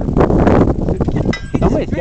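Wind noise on the microphone throughout, with a person's voice speaking indistinctly in the second half.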